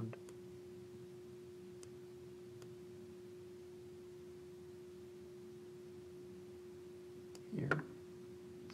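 A faint, steady hum at a single pitch, with a few soft computer-mouse clicks.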